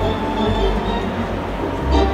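Arena organ playing music made of long held chords.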